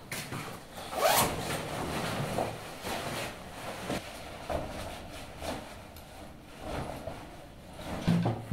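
Zipper of a hooded parka pulled open in one quick rising stroke about a second in, followed by the rustle of the jacket's fabric as it is taken off and handled.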